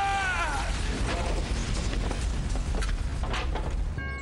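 Film explosion: a heavy, continuous rumble with crackling debris after the blast, and a man's yell falling in pitch in the first half-second.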